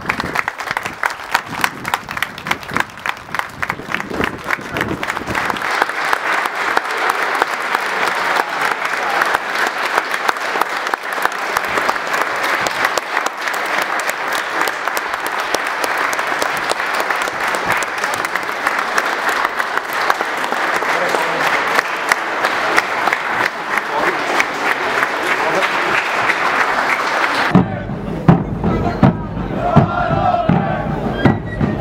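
A crowd applauding steadily, with voices among the clapping. Near the end it cuts to a band of large bass drums beating.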